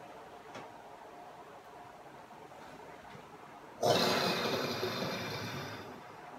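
A man blowing a long, forceful breath out through pursed lips. It starts suddenly about four seconds in and slowly fades, after a stretch of quiet room tone.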